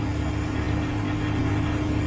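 A steady low hum with one faint held tone, unchanging throughout.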